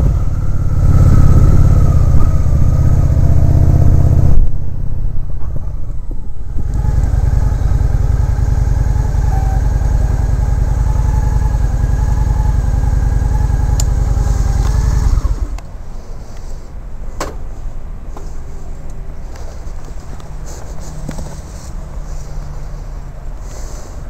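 Motorcycle engine running at low speed, easing off briefly about four seconds in, then falling to a much quieter level about fifteen seconds in as the bike slows down.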